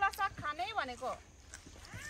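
A person's voice speaking in a few short phrases.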